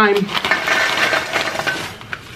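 Crunchy green snack sticks poured from a foil bag onto a metal baking tray: a dense, rattling clatter of many small pieces hitting the metal, tapering off near the end.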